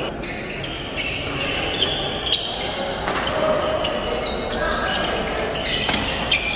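Badminton rally in a large hall: sharp racket strikes on the shuttlecock, several scattered through, over a steady murmur of crowd voices.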